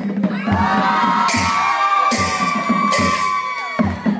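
A group of high-pitched voices giving a long held whoop of about three seconds, wavering and then dropping away near the end, while the drumming pauses.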